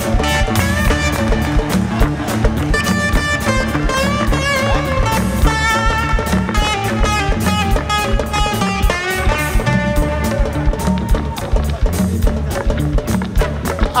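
Live band music: a drum kit keeping a busy, steady beat under a guitar playing held melodic notes.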